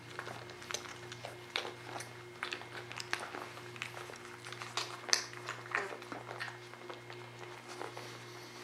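Week-and-a-half-old Weimaraner puppies nursing and being handled: scattered soft smacks, clicks and small squeaks over a steady low hum.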